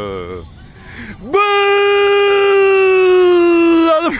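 A man's long goal shout: one drawn-out yell trails off, falling, in the first half second, and after a short lull a second shout starts about a second and a half in and is held on one steady pitch, sagging slightly at the end.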